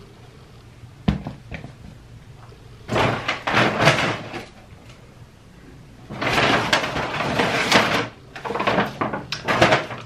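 A single sharp knock about a second in, as a metal insulated water bottle is set down on the table, followed by three stretches of loud rustling and handling noise.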